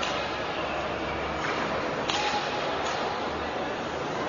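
Table tennis ball clicking off the paddles and the table during a rally: a few sharp clicks, one at the start and two close together about two seconds in, over a steady hiss.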